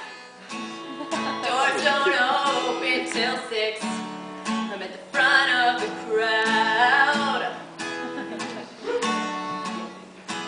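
Acoustic guitar strummed in a steady rhythm, ringing chords with a change of chord every few seconds, an instrumental passage of a song.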